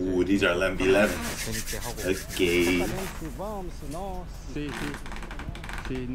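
Palms rubbed together briskly in rasping bursts, with a man's voice over them in places.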